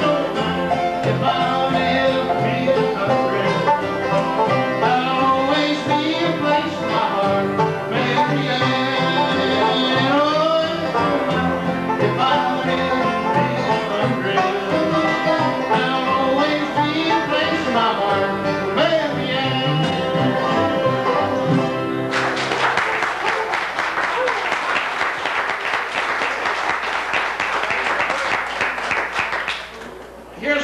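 Live bluegrass band playing and singing: acoustic guitar, five-string banjo and upright bass with a lead vocal. About 22 seconds in, the music stops and audience applause follows for several seconds.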